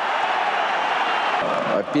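Football stadium crowd noise: a steady, dense wash of many voices from the stands.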